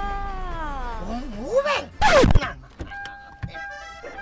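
A woman's drawn-out, exaggerated vocal exclamation sliding down in pitch, then a loud short comic swoop falling steeply in pitch about two seconds in. Near the end come a few steady electronic tones, like a short music sting.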